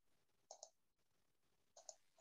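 Near silence on an online call, broken by two faint pairs of short clicks: one about half a second in and one near the end.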